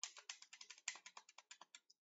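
Keys tapped in a quick run of sharp clicks, about ten a second, as a calculation is keyed in.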